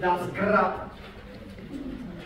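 A man's voice singing a short phrase on an open vowel in the first second, then fading to quieter held piano tones.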